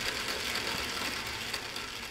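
Model T8 steam locomotive running on a roller test stand: its electric motor and gear drive whir steadily with a fast, fine mechanical rattle as the wheels turn the rollers.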